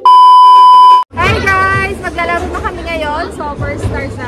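A loud, steady, high-pitched test-tone beep of a TV colour-bars glitch transition, lasting about a second and cutting off abruptly. People's voices follow.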